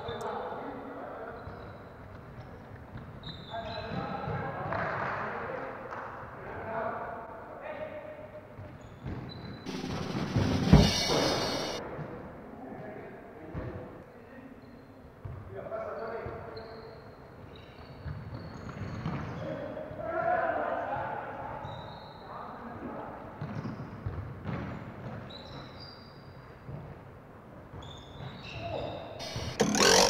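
Football being kicked and bouncing on a hard floor, with players' voices calling indistinctly in the background. One loud thump about eleven seconds in.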